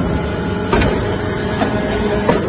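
Hydraulic metal-chip briquetting press running: a steady hydraulic hum under the machine's working noise, with sharp metallic knocks about two-thirds of a second in and again near the end.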